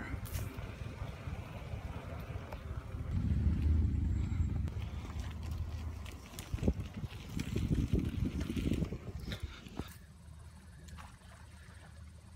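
Wind buffeting a handlebar-mounted phone's microphone while riding a bicycle: a low rumble with a few knocks and rattles from the bike. It falls away to a quieter background about ten seconds in.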